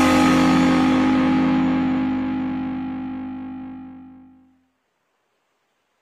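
The final chord of a rock song, played on a distorted electric guitar, held and ringing out as it fades away, dying to silence about four and a half seconds in.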